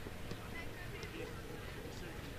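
Faint sound of a football pitch: distant players' voices, with a couple of soft knocks from the ball being kicked.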